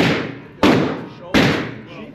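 Three 9 mm gunshots about two-thirds of a second apart, each a sharp crack followed by a reverberant tail in an indoor shooting range.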